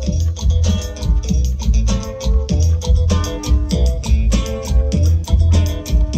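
A live cumbia band playing through PA speakers: a steady, loud beat with a heavy bass line and layered melody instruments, no singing.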